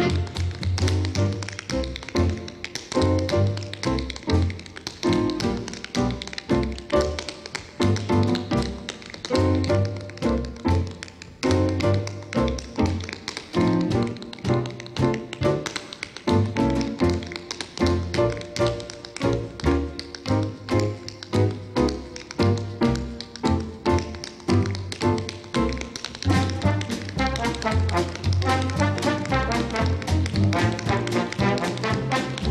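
Tap dancing: quick runs of sharp metal taps from tap shoes on a hard stage floor, over a big band playing with brass.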